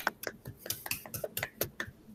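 Hand clapping heard through a video call's audio: quick, irregular claps, several a second, that thin out near the end.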